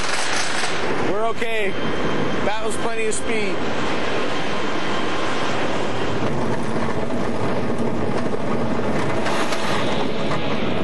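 Roller coaster train running along its track during a test run, a loud steady rumble and rattle of wheels on track. Two short shouts cut through it about a second and three seconds in.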